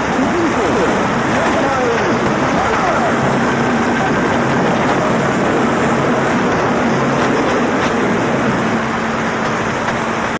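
Weak, distant AM broadcast from DYFX on 1305 kHz received at night on a Realistic Patrolman 5 portable radio: a faint voice, clearest in the first few seconds, buried under heavy static and hiss. A steady low tone comes and goes beneath it.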